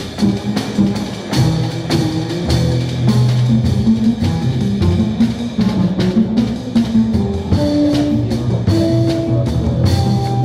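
Live jazz trio of tenor saxophone, plucked double bass and drum kit playing together, the drums ticking steadily on cymbals throughout. In the last few seconds the saxophone holds longer notes over the moving bass line.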